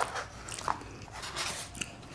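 Quiet close-miked chewing and mouth sounds of someone eating rice and peas, with a few soft clicks.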